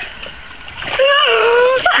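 Water splashing in a shallow stream as a person settles into it, then about a second in a woman's long drawn-out exclamation.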